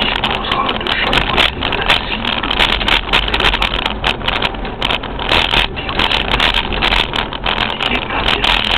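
Steady noise of a vehicle driving along a town street, heard from inside: engine and tyre rumble with an even hiss.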